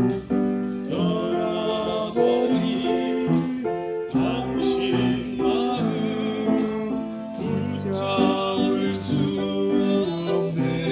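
Upright piano playing chordal accompaniment to a trot song, with a sung vocal line wavering over the chords.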